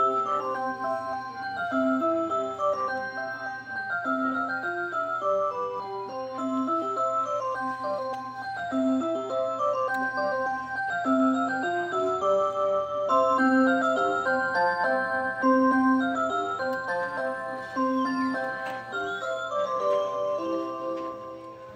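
Rhythm musical motion wall clock playing a melody on its Clarion Tone System electronic chime, one clear note after another in a steady tune.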